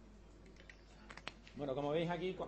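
A few clicks of a computer keyboard as a password is typed, then a man's voice holding a drawn-out hesitation sound from about a second and a half in.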